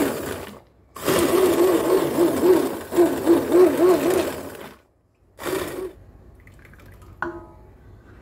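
Handheld stick blender running in pulses through a pot of cooked red beans and milk: a short burst, then nearly four seconds of steady blending with the motor's hum wavering up and down as it churns the liquid, then another short burst near six seconds. A brief tap follows near the end.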